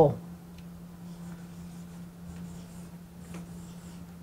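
Marker writing on a whiteboard: faint scratchy strokes as letters are drawn, over a steady low hum.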